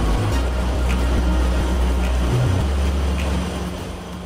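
Cyclocar cyclorotor prototype's two rotating bladed barrels running on a test rig: a steady loud whirring rush of motor and air noise, easing off a little near the end.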